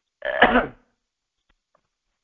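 A man clears his throat once, a short rough burst about half a second long.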